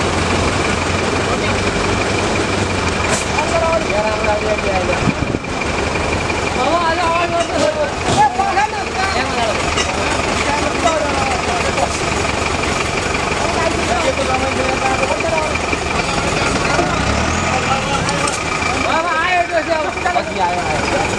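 Minibus engine running at low revs while the bus creeps forward, with a steady high whine over it. Voices of onlookers call out over the engine.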